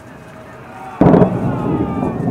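A distant fireworks salute shell bursting: a sudden loud boom about a second in that rolls on and echoes away.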